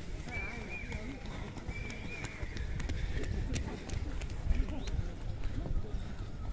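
Runners' footfalls on grass, with distant voices over a steady low rumble and a repeated wavering high call in the first half.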